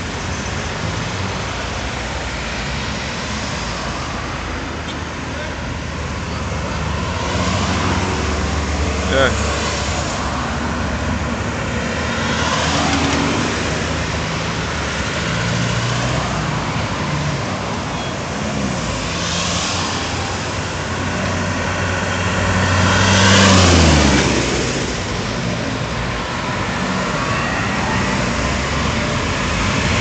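Steady road traffic going round a roundabout: cars, vans and minibuses pass one after another with engine and tyre noise. About three-quarters of the way through, one vehicle passes close and its engine note falls in pitch as it goes by.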